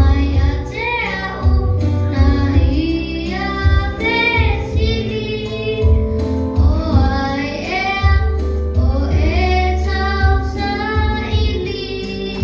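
A child singing into a microphone over accompanying music with a deep bass line, the sung notes gliding and held.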